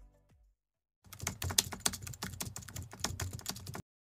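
Computer-keyboard typing sound effect: a rapid, irregular run of key clicks that cuts off suddenly near the end, after the last notes of a short jingle fade out in the first half second.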